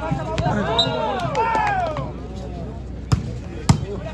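Shouting voices for the first couple of seconds, then a volleyball struck twice by players' hands: two sharp smacks a little over half a second apart, about three seconds in, the loudest sounds here.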